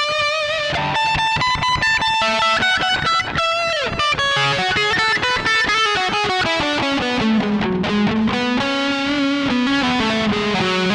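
Epiphone SG Special electric guitar played through a high-gain amp: a lead line of quick picked notes, a note bent down about four seconds in, then a slower falling phrase ending on a long held note with vibrato.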